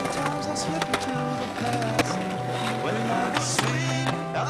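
Skateboard rolling, with a few sharp clacks of the board, the loudest about two seconds in, under a music track with a stepping bass line.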